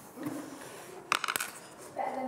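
A quick run of five or six light, sharp clicks about a second in, after a brief low murmur of a voice.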